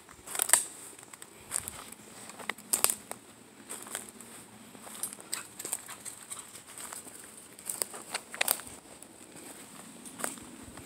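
Slow footsteps crunching on dry leaf litter and twigs, irregular, about one crackle a second.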